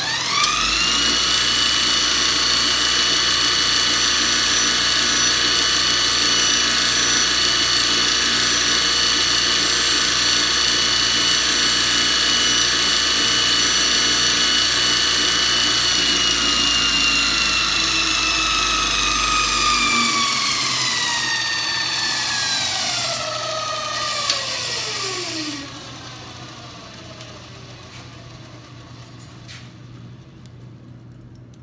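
JET bench grinder fitted with a Multitool belt attachment running a 220-grit belt: the motor spins up with a rising whine and then runs steadily with a loud high whine. About twenty seconds in it is switched off and winds down, the whine falling away over several seconds.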